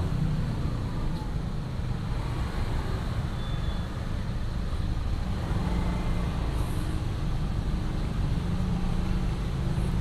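Steady low rumble of idling engines from a queue of cars and motorbikes stuck in slow traffic on a wet street.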